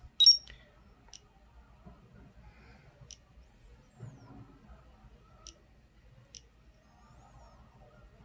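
The TFT24 touchscreen display's buzzer gives one short high beep about a quarter second in as the screen is tapped, followed by four faint thin ticks spread over the next several seconds.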